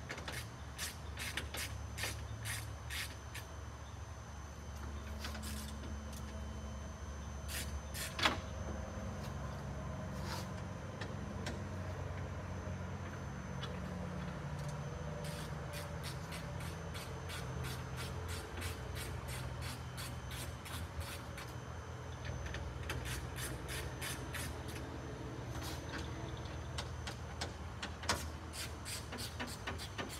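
Runs of quick clicks from a small hand wrench with a T30 Torx bit loosening the screws on a semi truck's chrome grille, starting and stopping in short bursts, with one sharper knock about eight seconds in. A low steady hum runs underneath.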